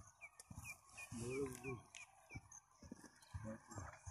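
A bird giving a quick run of about eight short, high, falling chirps in the first two seconds. A brief voice comes in the middle.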